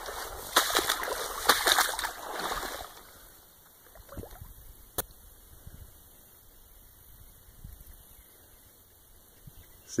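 Footsteps splashing and sloshing through shallow standing water in marsh grass, loud for about the first three seconds, then much quieter as the walking stops.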